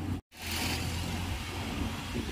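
The sound drops out for a split second near the start, then a steady low rumble of street traffic and car engines carries on.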